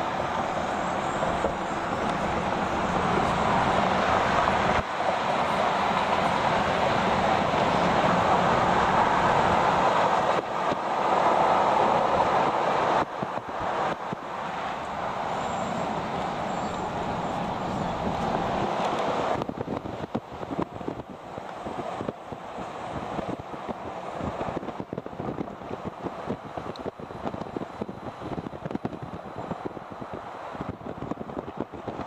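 Steady road and wind noise inside a moving car on a highway. About twenty seconds in it drops in level and turns uneven.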